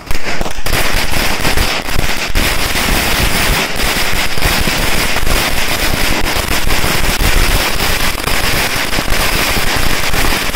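A long string of firecrackers (a thousands-strong 'wala' chain) going off in rapid, unbroken crackling bangs, setting in suddenly at the start.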